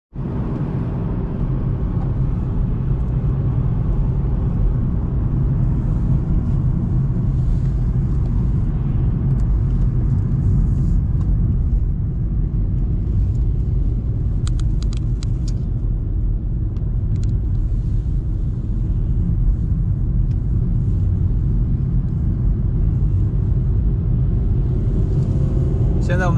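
Steady low rumble of a Volkswagen car being driven on the road, with engine and tyre noise heard from inside the cabin.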